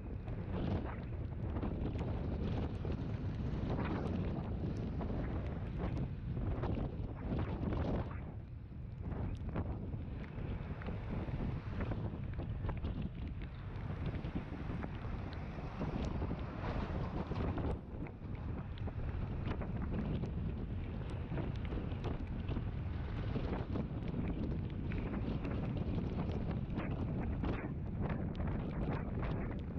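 Wind buffeting the microphone of a camera on a moving scooter, with the scooter's running motor and road noise underneath.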